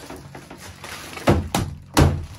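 Heavy thuds of a plastic bag of ice being struck against the bath rim to break up ice that has frozen into a lump: two thuds close together a little over a second in, and another at the end.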